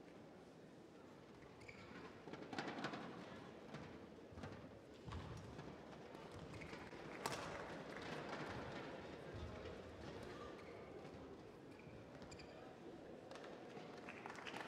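Quiet sports-hall ambience with faint voices and scattered thuds of footsteps on the court. About seven seconds in a sharp crack of a racket striking a shuttlecock starts a badminton rally, with fainter hits and footfalls after it.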